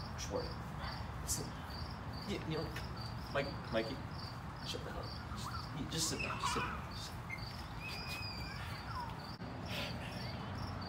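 Insects chirping steadily outdoors in an even pulse of about three high chirps a second, with faint voices and a few light knocks mixed in.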